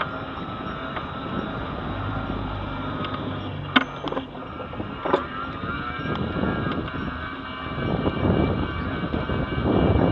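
Mobility scooter's electric drive whining steadily as it rolls along a paved footpath, with two sharp knocks about four and five seconds in. A car approaches along the road, growing louder over the last few seconds.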